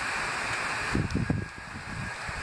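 Wind on a phone microphone outdoors: a steady rushing, then a few low buffeting gusts about a second in.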